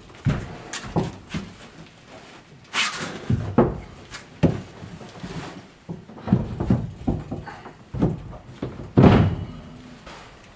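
A plastic fresh water tank being set down and shoved into a wooden floor framework: about a dozen irregular knocks and thumps, the loudest one near the end.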